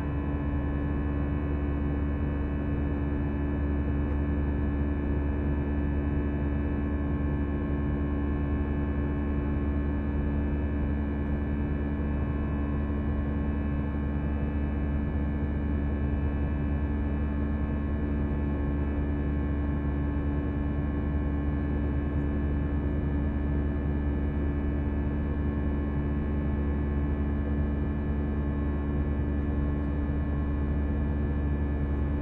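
Airbus A320 cabin noise in flight: the jet engines' steady drone, a deep rumble with several steady humming tones over it, unchanging throughout.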